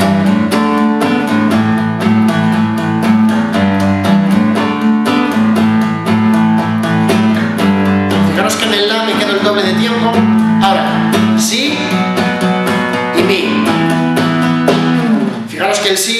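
Classical nylon-string guitar strummed in quick, even strokes through a chord sequence. The bass notes rock between the fifth and sixth in a 1950s rock and roll boogie pattern.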